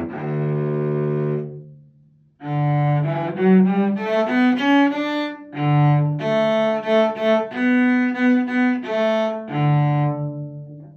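Solo cello played with the bow. A long held low note fades out about two seconds in. After a brief pause, a new phrase of separate bowed notes begins, moving up and including short repeated notes.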